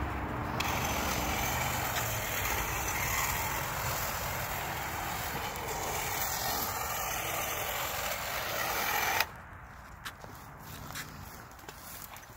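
Chainsaw running and cutting brush close to the ground, a steady loud buzz that cuts off suddenly about nine seconds in.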